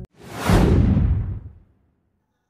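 Whoosh sound effect: a rush of noise that swells over about half a second, then fades over the next second, its hiss sinking lower as it dies away.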